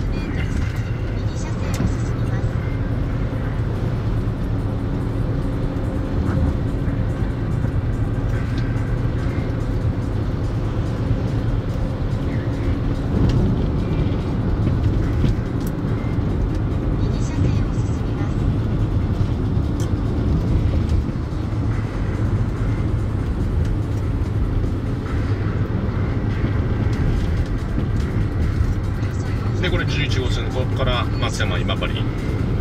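Steady engine and road noise heard inside the cabin of a moving car.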